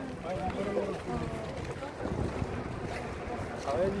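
Wind buffeting a phone microphone outdoors, with the voices of a group of people talking in the background.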